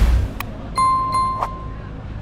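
Subscribe-button sound effect: a quick swoosh and a mouse click, then a notification bell dinging twice and fading, over faint street ambience.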